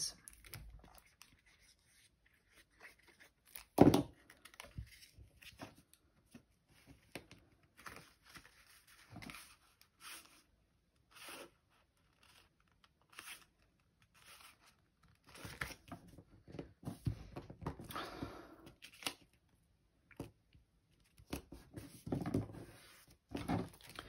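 Cardstock and patterned paper handled on a wooden desk: intermittent rustles, slides and light taps as the card layers are glued and pressed together, with one sharp knock about four seconds in.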